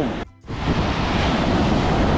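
Ocean surf and wind noise, a steady rushing sound, after a brief drop-out at an edit cut about a quarter of a second in.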